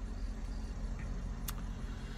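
Steady low hum of a car heard from inside its cabin, with one faint click about one and a half seconds in.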